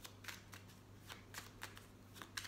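A deck of tarot cards being shuffled by hand: quiet, irregular soft clicks and slides of card against card.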